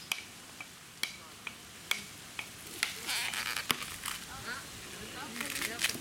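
Coconut husk being torn off on a pointed husking stake: sharp cracks of fibre splitting at irregular intervals, with two longer rasping tears, one about halfway through and one near the end.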